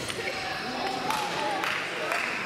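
Thuds of judo players' bodies landing on the mat as one takes the other down, a sharp impact at the start and more a second or so later, under shouting voices from the sidelines.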